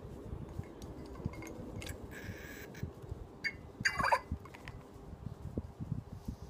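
Plastic syringe being worked in the neck of a bottle to draw up liquid chlorophyll: low handling rustle and small clicks, a brief hiss a couple of seconds in, and one short squeal falling in pitch about four seconds in.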